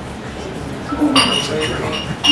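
A glass clinking once, a little over a second in, with a brief high ring, over low crowd chatter in a bar.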